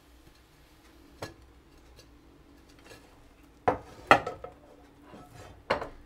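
Frying pan, plate and spatula knocking and clattering as a tortilla is turned out of the pan onto a plate: a light tap about a second in, then a few sharp knocks around four seconds in and one more near the end.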